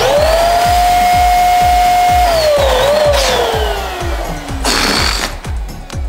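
Electric balloon pump switching on with a quick rising whine, holding a steady pitch for about two seconds, then falling in pitch as it winds down. A short hiss follows near the end, over a steady beat of background music.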